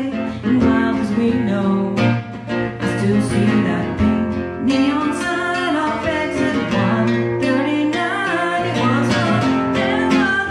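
A woman singing a country-pop song over a strummed acoustic guitar, steady strumming under her sung melody.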